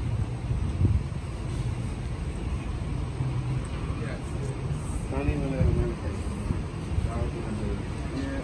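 Steady low outdoor rumble, with a person's voice talking indistinctly in the background about five seconds in.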